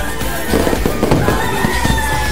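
Crackling fireworks over background music, the crackle thickest from about half a second in until near the end.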